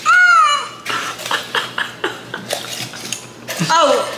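Aluminium foil crinkling and crackling in a run of short sharp clicks as it is worked on and pulled from a plastic cup. A voice sounds briefly at the start and again near the end.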